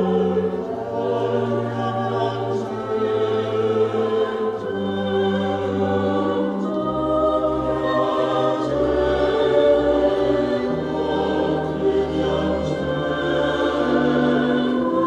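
Mixed choir singing a seventeenth-century sacred chorus in several voice parts, accompanied by a small baroque ensemble. Long held bass notes change only a few times beneath the voices.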